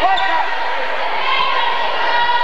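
A basketball dribbled on a hardwood gym floor: two low thuds over a second apart, under steady crowd chatter and shouting.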